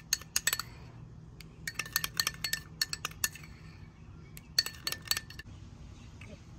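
Metal spoon clinking against a small ceramic bowl while stirring a mayonnaise sauce, in three spells of quick clinks with short pauses between.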